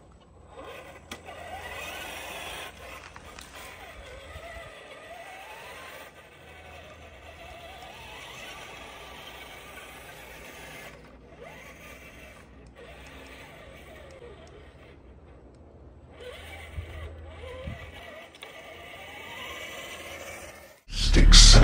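Electric motor and gears of an RC4WD Toyota pickup scale RC truck whining, the pitch rising and falling as the throttle is worked, over a steady low rumble.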